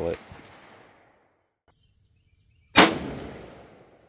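A single rifle shot from a 7.62×39 Anderson AR-style rifle, about two-thirds of the way in: one sharp, loud crack that dies away over about a second.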